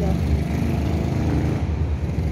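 Steady low rumble of nearby road traffic, with a faint engine drone through the middle.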